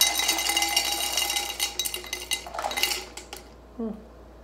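Ice cubes poured from a plastic cup into a tall drinking glass: a rapid run of clinks with the glass ringing, thinning out and stopping a little over three seconds in.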